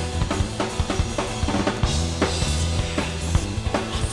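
Rock band playing live: a steady drum kit beat of bass drum and snare over bass and strummed acoustic guitar.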